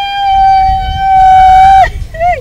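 A woman's long, high wail held on one steady pitch, breaking off with a sudden drop near the end.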